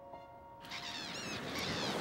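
A held musical tone fades out, then small waves washing on a sandy beach rise in, with a few high bird calls about a second in.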